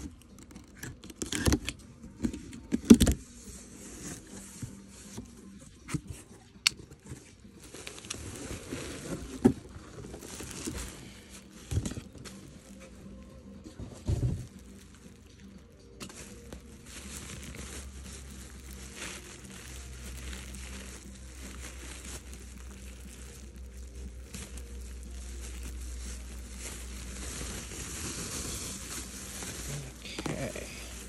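A cardboard shipping box being opened, with scattered sharp snaps and knocks of cardboard and tape in the first half. From about halfway, a large plastic bag rustles and crinkles steadily as it is handled and pulled open.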